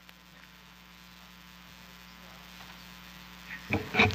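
Steady electrical mains hum from the microphone and sound system in a quiet pause, with a couple of faint knocks near the end.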